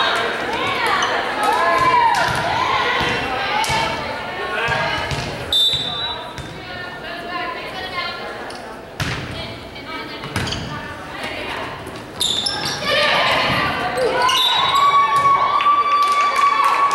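Volleyball game in a gym: players' shouts and calls, sneakers squeaking on the hardwood floor, and several sharp hits of the ball during a rally, with louder shouting and squeaking again near the end as the point finishes.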